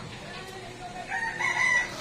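A rooster crowing: one drawn-out call that begins faintly about half a second in and swells and rises toward the end.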